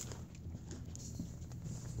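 Footsteps on a hard store floor, a few light irregular taps over a low steady hum.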